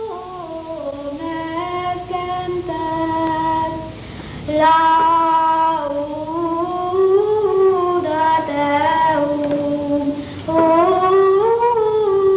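A boy singing solo without accompaniment, a slow melismatic line of long held notes that glide from pitch to pitch, with breaks between phrases about four and ten seconds in.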